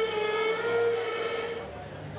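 A steam-train whistle on the sand show's soundtrack: one long blast of several tones together, held steady, then fading out about a second and a half in.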